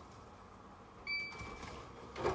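A short, high electronic beep from an Xbox 360 about a second in, as its disc tray is set closing.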